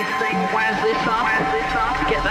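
Electronic music from a live keyboard jam: synth parts with bending, wavering pitches over a steady held note. A deep bass tone comes in about one and a half seconds in.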